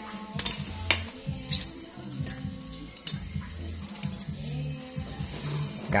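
Background music with a steady low bass line, with a few sharp metal clinks in the first couple of seconds as the steel tape measure and tools knock against a cast-iron C-clamp.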